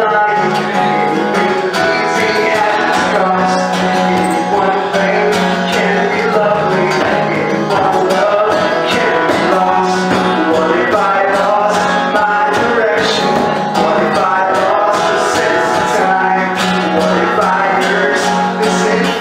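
Acoustic guitar strummed steadily, with a man's voice singing along.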